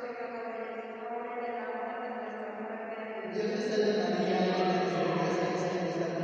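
Voices chanting a slow prayer in unison, with long held notes; about three seconds in it gets louder and fuller.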